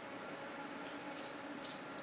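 Quiet room tone: a faint steady hiss and hum, with two brief, soft high-pitched hisses past the middle.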